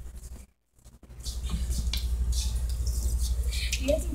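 Drinking fountain running: a steady stream of water with a low hum underneath, starting about a second in.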